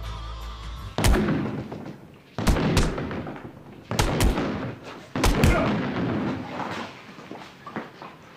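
Boxing gloves punching a heavy bag: about seven hard thuds starting about a second in, several landing in quick pairs, with music fading out at the start.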